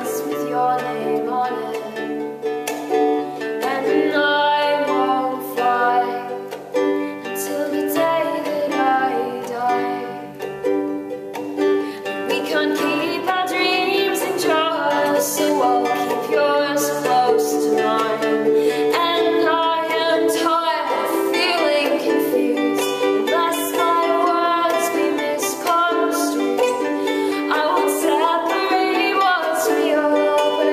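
A ukulele and an acoustic guitar strummed and picked together, playing an indie pop song live and unamplified.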